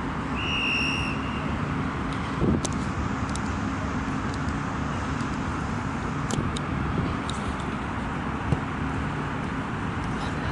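Steady outdoor city background noise: a continuous traffic rumble and hum. A short, high, steady whistle-like tone sounds about half a second in, and a few faint knocks come later.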